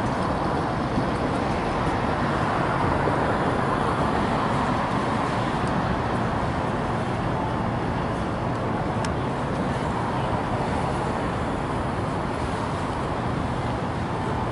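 Steady street noise of road traffic mixed with the hubbub of people walking by, with one sharp click about nine seconds in.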